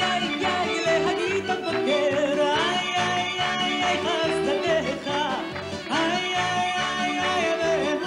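A woman singing a Hasidic-style song live into a microphone with band accompaniment, holding long notes with vibrato about three seconds in and again from about six seconds.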